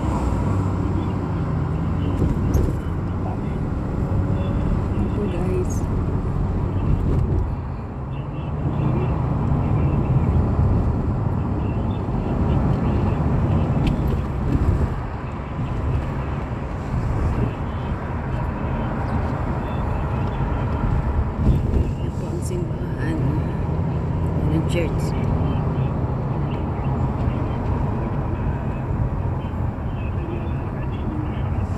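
Engine and road noise from inside a moving car: a steady low rumble.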